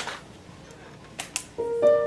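Applause dies away, then after a short pause with a couple of small clicks an upright piano begins, with single sustained notes entering about one and a half seconds in.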